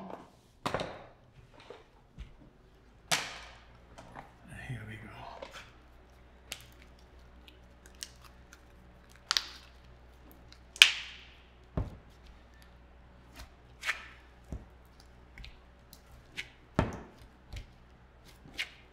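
A small electric desk fan running with a steady low hum, over a scattering of sharp clicks and snips from scissors and handling of hot pulled sugar on a silicone mat.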